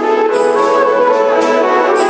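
Instrumental passage of a live wedding band, led by trumpet with flute, saxophone and violin holding sustained notes over a light, steady beat.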